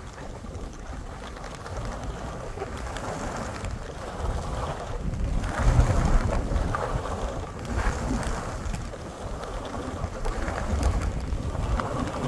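Wind buffeting the microphone during a ski run, with the rushing hiss of skis through soft fresh snow that swells with each turn, loudest around the middle.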